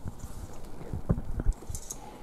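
Several dull knocks and thumps, about five in two seconds: a handheld microphone being handled and a man getting up out of a leather armchair.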